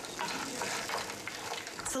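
Green peas frying with a steady hiss in a nonstick frying pan, stirred with a wooden spoon.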